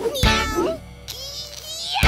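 Children's song: high, cartoonish puppet voices singing sliding, meow-like vocal lines over the music.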